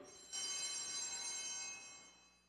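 Altar bells ringing at the elevation of the chalice, marking the consecration. A bright metallic ringing of several tones starts about a third of a second in and holds evenly before cutting off at the end.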